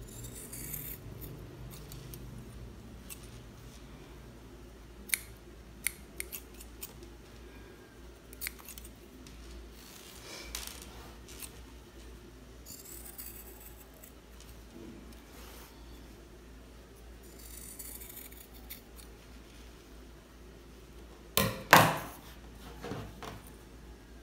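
Shears cutting through cotton fabric: a few slow snips, each a short swishing rasp of the blades through the cloth, with scattered light clicks of the blades closing. Near the end come two loud sharp knocks close together, the loudest sounds here.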